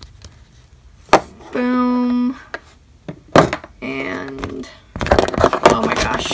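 A voice making wordless vocal sounds: one held, even note about a second and a half in, then shorter gliding noises. Sharp clicks of small plastic toy figures being handled come just over a second in and again past three seconds.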